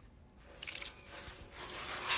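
Small metal mechanism clicking and ratcheting, with a few thin, high squeaks about a second in; it sets in after a brief near-quiet moment.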